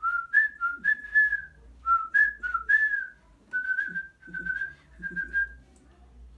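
A man whistling a short jingle-like tune: a quick run of notes stepping between a few pitches, then after a brief pause three longer, steadier notes, stopping just before the end.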